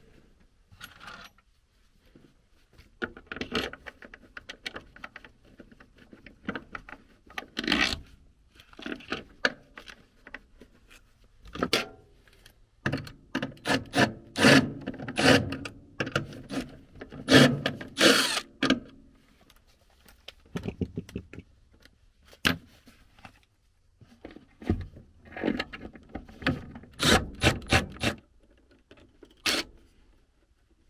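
Irregular clicks, knocks and scraping of tools and parts being handled inside a sheet-metal furnace cabinet, with a busier stretch of rubbing and rattling near the middle.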